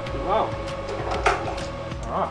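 A man speaks briefly over a soft, steady background music bed, with a single sharp knock about a second in.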